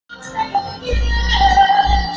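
A woman singing karaoke into a microphone over a backing track, amplified through a bar's sound system; a heavy bass comes in about a second in and she holds a long note near the end.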